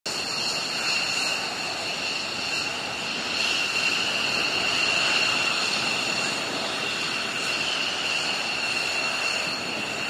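Jet engines of F-15E Strike Eagle fighters running at idle on the flight line: a steady rushing noise with a high, steady whine.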